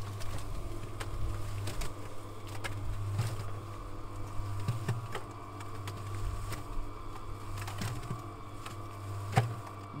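Portable cement mixer running, its drum turning steadily with a low hum as a freshly watered four-to-one sand and cement mortar mix tumbles inside. Occasional knocks, with a louder one near the end.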